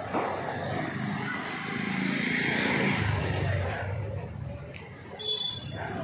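A motorcycle passing by on the street, its engine and tyre noise growing louder to a peak a few seconds in and then fading away.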